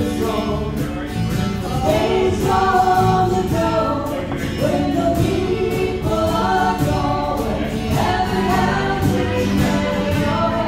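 Live acoustic band playing a waltz, with a voice singing the melody over guitar accompaniment.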